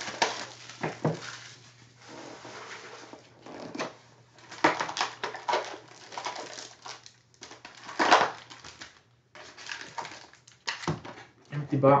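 Cardboard trading-card hobby box being opened and its foil-wrapped packs lifted out and set down by hand: an irregular run of rustles, scrapes and light knocks over a low steady hum.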